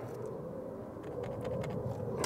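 Quiet, steady background rumble with a few faint light ticks in the second half.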